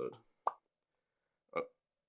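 A single short pop about half a second in, between spoken words, followed by dead silence.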